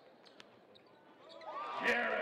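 Near silence for over a second, then basketball court sound fades in: sneakers squeaking on the hardwood floor, with a single sharp thump near the end.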